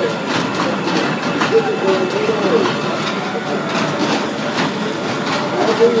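Fairground kiddie race-car ride running, its cars clattering steadily round the track, with voices over it.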